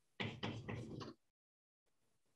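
Four or five soft knocks in quick succession, over about a second.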